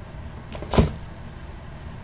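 A boot is set down in a cardboard shoebox: a light knock, then a single dull thud a fraction of a second later.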